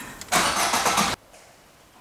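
Car engine being started with the key: the starter cranks loudly for about a second and then cuts off suddenly.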